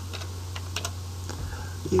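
Computer keyboard keystrokes: a quick, irregular run of about a dozen key clicks over a low steady hum.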